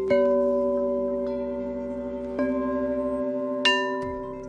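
Crystal singing bowls struck with a mallet three times, at the start, past halfway and near the end. Each strike rings on in several overlapping steady tones that slowly fade.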